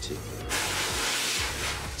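A steady hissing noise, starting about half a second in and lasting about a second and a half.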